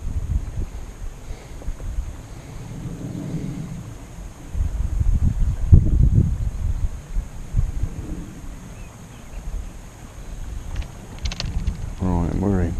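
Wind buffeting the microphone: a low rumble that comes and goes in gusts, strongest from about four and a half to seven seconds in, with a few faint clicks near the end.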